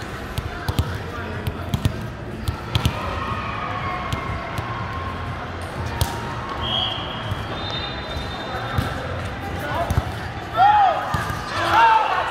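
A volleyball bounced on a hard gym floor several times, about once a second, then struck hard once in a jump serve about six seconds in; players shout near the end.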